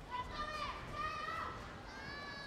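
High-pitched shouting voices, three drawn-out calls that bend in pitch, like cheering from the arena stands.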